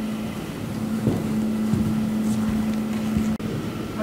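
A steady low hum over a rumbling background noise, with a few soft low thumps. The hum cuts off abruptly near the end.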